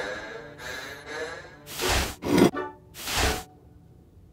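Cartoon soundtrack: a musical phrase fading out, then three short whooshing sound effects in quick succession.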